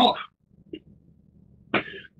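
A man's spoken word ends, then a pause, then a short breathy throat sound near the end.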